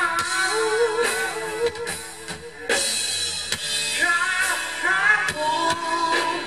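Live pop-rock band playing through outdoor PA speakers: drum kit, electric guitar and a singing voice, with a sharp drum hit about halfway through.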